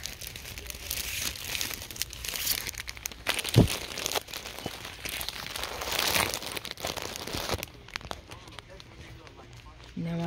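Plastic wrappers of braiding-hair packs crinkling as they are handled, with one thump about three and a half seconds in. The crinkling dies down near the end.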